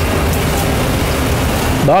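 Steady outdoor background noise: an even hiss over a low rumble, fairly loud, with no single sound standing out. A man's voice starts again at the very end.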